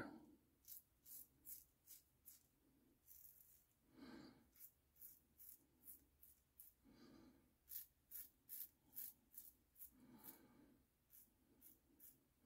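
Faint, repeated scraping strokes of a Stirling hyper-aggressive safety razor cutting a day's stubble through lather, mostly short strokes with a few longer ones. It is a loud razor that gives plenty of audible feedback.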